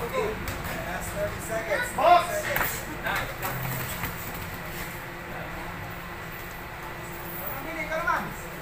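Indistinct voices of spectators and corner people in a gym, a few short calls in the first three seconds, the loudest just after two seconds, then steady background crowd noise with another voice near the end.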